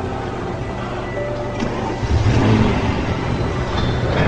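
Soft background music, joined about halfway by a loud, low car engine rumble.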